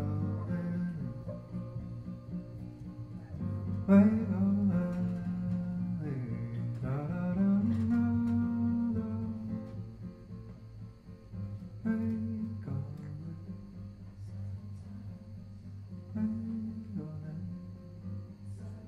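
Live folk song: a man's voice sings slow, drawn-out phrases over a plucked acoustic guitar.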